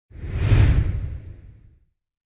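A single whoosh sound effect with a deep low rumble under a bright hiss, swelling quickly to a peak about half a second in and fading out before two seconds: an intro logo sting.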